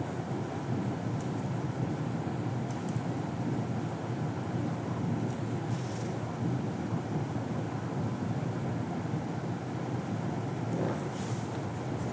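Steady low rumbling background noise with no clear pitch, with a few faint, brief ticks over it.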